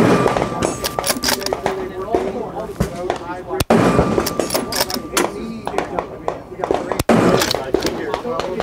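Browning X-Bolt 2 Speed bolt-action rifle firing from a bench rest, three sharp shots about three and a half seconds apart, with voices and other range noise between them.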